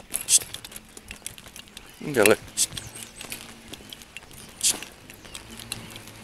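Footsteps and the light clinking of a dog's lead during a walk. Two short sharp hisses come near the start and again about a second before the end, and a brief voice sound is heard about two seconds in.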